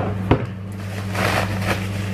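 Handling noise as a hot air brush is taken out of its packaging: a sharp knock about a third of a second in, then a short stretch of rustling about a second later, over a steady low hum.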